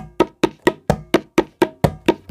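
Tabla played in an even run of short, damped strokes, about four a second, the closed tirkit (tirakita) strokes of a practice passage rather than ringing open strokes.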